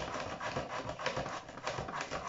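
Rapid, uneven clicking and scraping of kitchen utensils in hand-held food preparation, several strokes a second.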